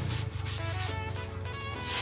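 Repeated rasping scrapes by hand over background music with a melody.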